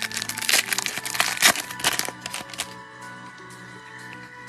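Plastic trading card pack wrapper crinkling and tearing as it is cut and pulled open, a dense run of sharp crackles that dies down after about two and a half seconds. Background music with sustained tones runs underneath.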